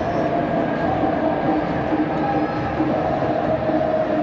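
Football stadium crowd making a steady din of many voices, with sustained chanting tones that shift pitch every second or so.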